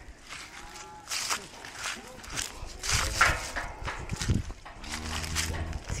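Footsteps crunching over dry, leaf-littered ground, then a cow mooing: one long, low call that begins near the end.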